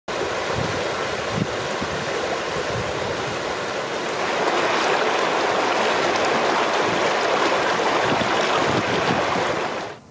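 Shallow rocky creek rushing over stones in small rapids: a steady wash of water that grows louder about four seconds in and cuts off suddenly at the end.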